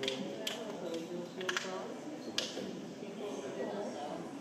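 Indistinct talking of several people in the background, with a few sharp clicks or taps scattered through it: one near the start, one about half a second in, a quick pair about a second and a half in, and one about two and a half seconds in.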